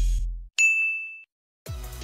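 Background music fades out, then a single high, bright ding sound effect rings and dies away within about two-thirds of a second. After a brief silence, music comes back in near the end.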